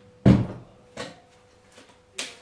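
A loud thump a quarter second in, then a lighter knock about a second in, over a faint steady hum.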